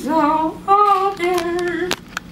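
A woman singing a gospel chorus alone, without accompaniment, holding long notes with short breaks between phrases. A short sharp click sounds near the end.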